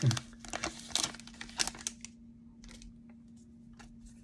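Foil Pokémon booster pack wrapper crinkling as it is handled, mostly in the first two seconds, then a few light rustles as the cards are drawn out of the pack.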